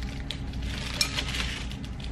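A small plastic condiment cup being handled and its lid worked open: light plastic crinkles and clicks, with one sharper click about a second in.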